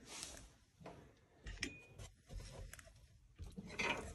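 Quiet room with a few faint, scattered clicks and rustles of handling as the phone is moved.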